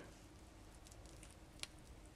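Near silence, with a faint click near the end as wire paper clips are handled on a cloth-wrapped can-tab battery.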